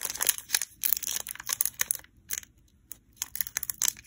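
Foil wrapper of a Pokémon card booster pack crinkling and tearing as it is pulled open by hand at the crimped top. The crackles are irregular, with a pause of about a second in the middle.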